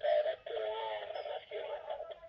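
A recorded voice announcement played over a level crossing's loudspeaker, like a station announcement, warning of a train instead of a siren. The voice sounds electronic and wavers in pitch, with short breaks.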